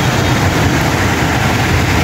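Floodwater rushing through a concrete drainage channel: a steady, loud rush with a deep rumble underneath. The seasonal river is running high after heavy rain.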